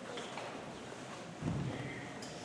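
Quiet concert hall with no band playing: scattered faint clicks and knocks of instruments and chairs being handled, and a single low thump about one and a half seconds in.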